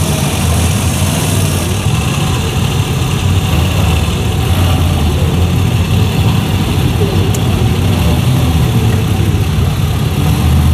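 Police escort motorcycles' engines running at low speed, a loud steady low rumble.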